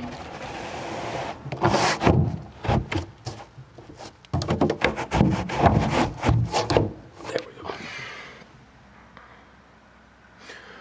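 Carpeted boat deck cover being slid back over the battery compartment and seated in its frame: a scraping slide, then a run of knocks and thuds as it is pushed and settled. The sound dies away about two seconds before the end.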